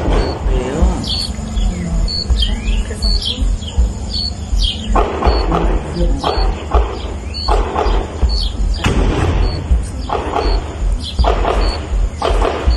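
Outdoor ambience recorded on a phone: birds chirping in short repeated calls, with gusts of hiss and a low rumble from wind on the microphone.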